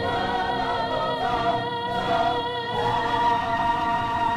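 A female lead voice singing held, wavering notes over an ensemble chorus in a live musical-theatre number, with instrumental accompaniment.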